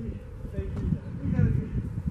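Indistinct voices, with wind buffeting the microphone in a low rumble.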